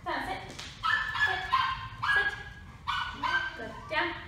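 A Presa Canario giving a series of about five short, high-pitched whining yips.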